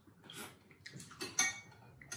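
Tasting from a metal spoon: a short sip and small mouth clicks, with a light spoon clink about one and a half seconds in.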